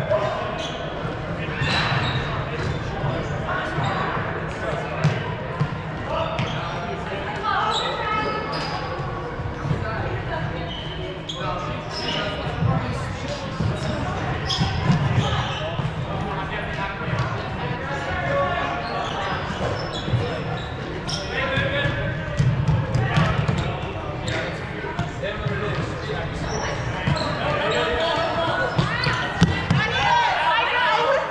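Players' voices calling out and echoing around a large gym, with scattered footfalls and sharp thuds on the hardwood court as they run.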